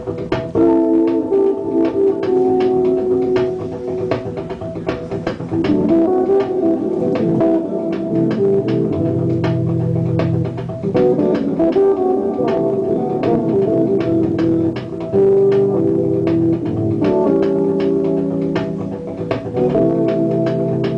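Live instrumental passage on an organ-sounding keyboard: sustained chords held for a few seconds each and changing, over a steady ticking beat.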